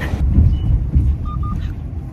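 Low, steady road rumble inside a moving car's cabin, with two short beeps about a second and a quarter in.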